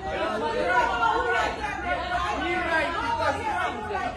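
Crowd of protesting vendors talking and arguing over one another, several voices at once with no single clear speaker.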